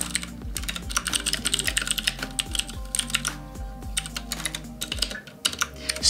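Typing on a computer keyboard: quick runs of key clicks with short pauses between words, over quiet background music.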